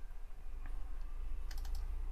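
A few faint computer keyboard key presses, one alone and then a quick cluster near the end, over a steady low hum.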